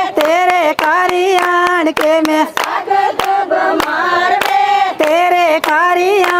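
Women singing a Punjabi boli over a steady rhythm of hand claps, the clapping beat of giddha. The claps come several times a second and cut through the sung phrases.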